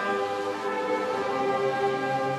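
Slow orchestral music with long held chords of strings and winds, played as ceremonial accompaniment to the pinning of rank insignia.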